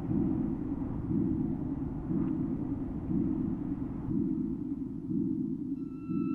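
Ambient electronic music: a low, rumbling drone that swells about once a second, with a faint click about two seconds in.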